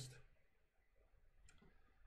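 Near silence: room tone in a pause between spoken phrases, with one faint click about one and a half seconds in.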